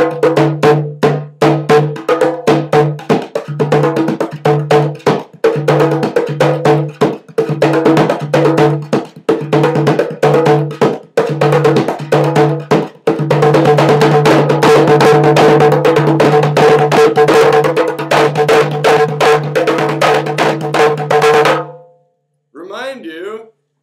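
Handmade three-headed stoneware darbuka (doumbek) with stingray-skin heads, played with both hands in a quick rhythm of strokes over a deep ringing pitch, sounding like a djembe. About 13 seconds in the playing becomes a fast continuous roll, which stops just before the end.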